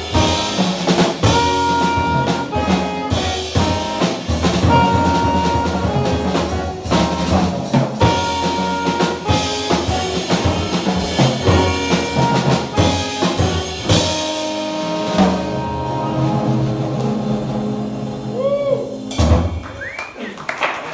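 Live hard-bop jazz band, alto and tenor saxophones over piano, double bass and drums, playing the closing bars of a tune. From about two-thirds of the way in it holds a long final chord, cut off by a last accented drum hit near the end.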